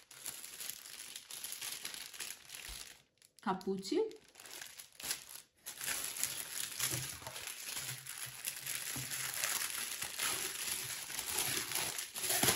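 Clear plastic wrapping crinkling and rustling as it is handled and pulled open, busiest in the second half. A brief voice sound comes a few seconds in.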